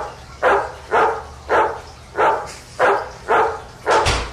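An animal's short call repeated evenly about eight times, roughly two calls a second.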